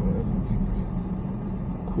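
Car engine and road noise heard inside a moving car's cabin: a steady low hum at low speed.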